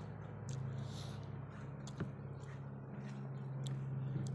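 Close-miked chewing and wet mouth sounds of a person eating by hand, with short smacks and clicks, one sharper about two seconds in. A steady low hum runs underneath.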